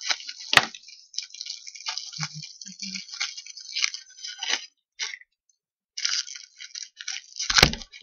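Crinkling and rustling of a cellophane-wrapped card pack being handled and pulled from a cardboard box, in uneven bursts, with a sharp click about half a second in and a louder snap near the end.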